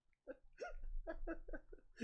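A man laughing hard, a quick run of short breathy ha's at about six a second, starting a moment in.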